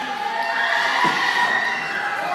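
A group of young children shouting and cheering together in a long, drawn-out chorus.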